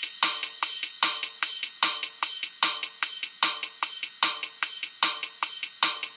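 Programmed GarageBand Rock Kit drum loop playing back: bass kick, snare and open hi-hat in a simple two-step beat at 150 beats per minute, a steady hit about every 0.4 seconds.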